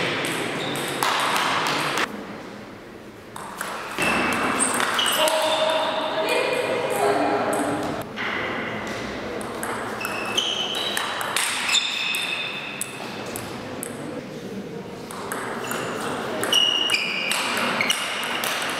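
Table tennis ball clicking off paddles and the table, in short irregular runs of hits and bounces, with a quieter lull a couple of seconds in.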